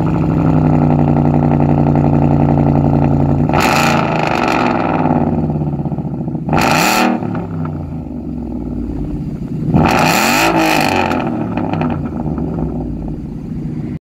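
2016 Ford Mustang GT's 5.0 V8 running through a straight-pipe cat-back exhaust with two 12-inch glass-pack mufflers. It idles steadily and is revved three times: a longer rev after about three and a half seconds, a short sharp blip around seven seconds, and another rev about ten seconds in, settling back to idle after each.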